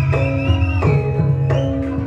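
Javanese gamelan music accompanying a Lengger dance: drums beating under ringing gong and metallophone notes, with a high wavering melody above them.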